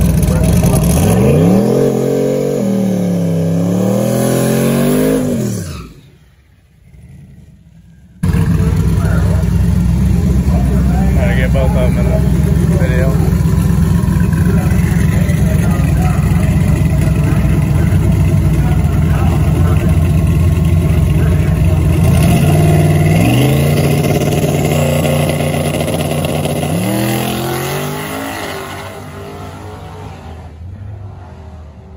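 Twin-turbo drag-race Camaro engine revving up and down during a burnout. After a short break it runs loud and steady at the line, sweeps up in revs twice, and fades as the car pulls away down the track.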